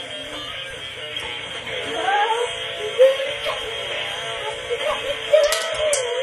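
Electronic toy music with a child's voice singing over it, the voice bending up and down over a steady held tone. A few sharp clicks near the end.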